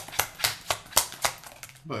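A quick, even run of sharp clicks or taps, about four to five a second, that stops just before the end.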